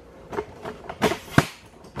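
A few sharp knocks and clicks from parts being handled, the loudest about one and a half seconds in.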